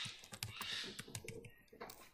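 Computer keyboard being typed on: a quick, irregular run of faint keystroke clicks.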